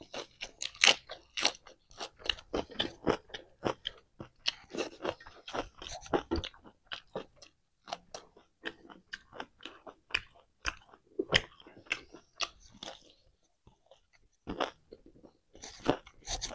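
Close-miked chewing of a mouthful of fresh lettuce leaf and rice: wet, crunchy crackles in quick, irregular succession, with a brief lull about two seconds before the end.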